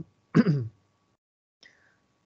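A man clearing his throat once, a short sharp burst about a third of a second in.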